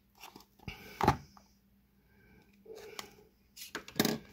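Utility knife slitting the paper seal band on a small cardboard trading-card box, with a sharp click and scrape about a second in. Further clicks and rustling of the cardboard follow as the box is handled.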